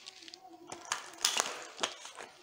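Tarot deck being shuffled by hand: a few sharp card flicks and slaps, the loudest a little past the middle and another shortly before the end, with a faint murmuring voice underneath.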